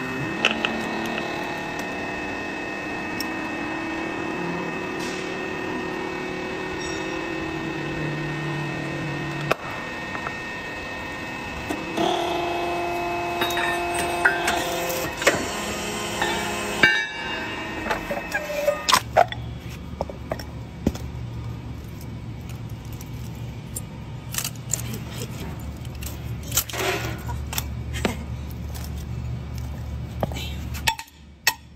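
Hydraulic motor-rotor shaft puller running with a steady, slightly whining hum whose pitch shifts a couple of times, with metal clinks and knocks as the shaft is drawn out of the rotor. Later it settles into a lower hum with scattered clicks.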